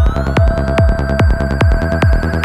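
Dark, driving electronic dance music in a continuous DJ mix. A kick drum lands on every beat, a little over two a second, under fast ticking percussion and a pulsing bass. A synth tone glides upward and then holds from about half a second in.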